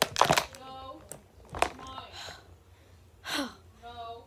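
A plastic container clattering as it is flipped over, with a sharp knock about one and a half seconds in as things fall out. A child's short wordless voice sounds and a gasp come between.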